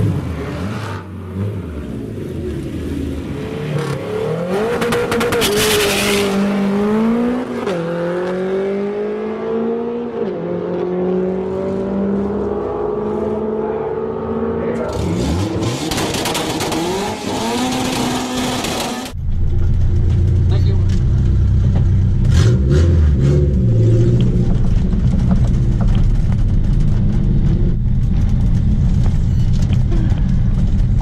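Honda CRX with an H22 2.2-litre VTEC four-cylinder, naturally aspirated, accelerating flat out down a drag strip. Its engine note climbs and falls back at each upshift. About two-thirds through, the sound cuts to a steady low engine drone heard inside the car's cabin.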